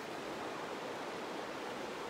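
Steady, even rush of the Tedori River's flowing water.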